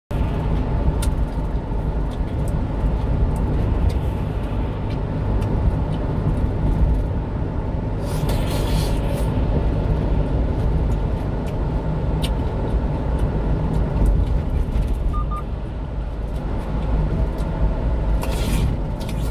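Steady low rumble of engine and road noise inside a small truck's cab cruising at highway speed, with a louder rushing swell about eight seconds in. Two short faint beeps come near the end.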